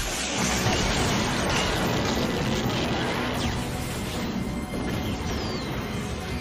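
Cartoon sound effect of Cyclops's optic blast going off: a sudden loud blast at the start that rumbles on and slowly fades, with music underneath.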